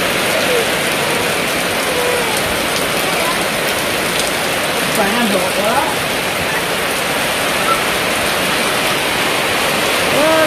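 Heavy rain falling steadily on a roof and the surrounding fields, with a faint voice briefly about halfway through.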